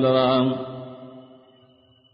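A man's voice holds the last syllable of a phrase on a steady pitch, then fades away over about a second into near quiet. A faint, thin, high tone lingers after the voice stops.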